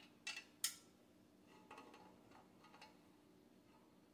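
Two sharp metallic clicks in quick succession, the second louder, as the steel platform plate is shifted against its metal bracket, followed by a few faint taps. A faint steady hum runs underneath.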